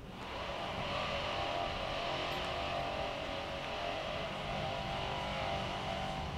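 A steady engine hum holding one pitch throughout, as from a motor vehicle running nearby.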